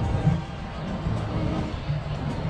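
Background music with sustained bass notes.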